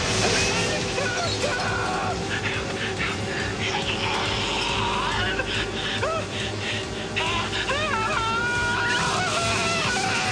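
Horror-film soundtrack: a music score over a steady hiss, with a man's cries in the second half.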